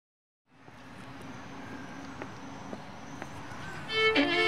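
Steady background of distant road traffic fading in about half a second in, with a few faint clicks. A violin starts playing right at the end.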